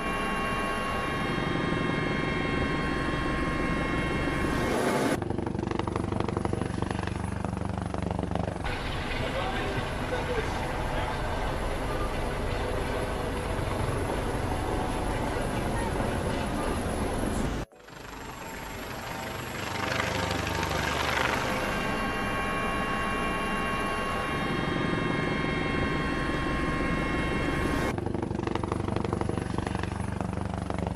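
Helicopter engine and rotor noise heard from inside the open-door cabin, steady and loud, with a brief dropout about two-thirds through; crew voices speak over it.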